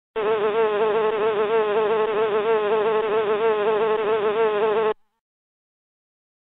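Buzzing-bee sound effect for a cartoon bee: one steady buzz wavering gently in pitch, which cuts off suddenly about five seconds in.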